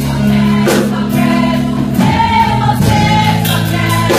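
A church worship band plays a gospel song while a group of voices sings. An electric bass holds long low notes and changes note about halfway through.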